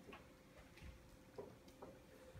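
Near silence with about four faint, irregularly spaced ticks of a dry-erase marker tapping and stroking on a whiteboard as numbers are written.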